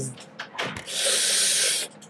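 A person's long hissing exhale of breath, lasting just under a second about halfway in, after a short puff of breath.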